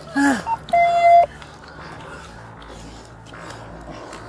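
A short cry falling in pitch, then a steady electronic beep lasting about half a second. After it there is only low background noise.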